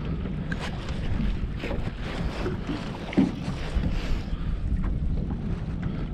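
Wind buffeting the microphone, with choppy water slapping against a bass boat's hull, as a steady rough rumble.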